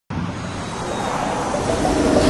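Vehicle noise: a steady roar with a low hum, slowly growing louder.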